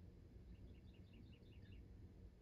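Near silence: room tone, with a faint bird's trill of quick, high chirps starting about half a second in and lasting just over a second.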